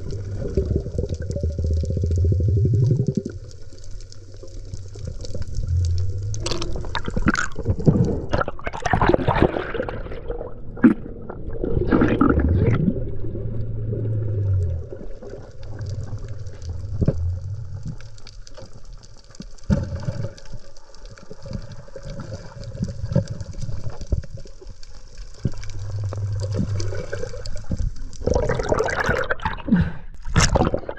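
Underwater sound picked up by a diver's camera while spearfishing on a reef: muffled water movement and bubbling, with recurring low hums and scattered clicks. Near the end the camera comes up through the surface with a splash.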